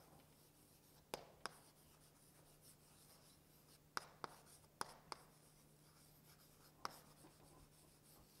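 Chalk writing on a blackboard, heard faintly: about seven short, sharp taps and clicks of the chalk against the board, several of them in quick pairs.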